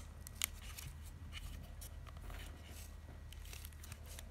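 Handling noise close to a phone's microphone: two sharp clicks in the first half second, then a scatter of light ticks and rustles over a low steady hum.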